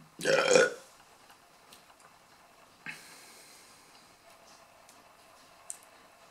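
A man's loud burp of about half a second at the very start. Faint clicks and a brief rustle follow about three seconds in.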